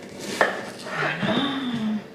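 A kitchen knife cuts through a courgette and strikes the chopping board once, sharply, about half a second in.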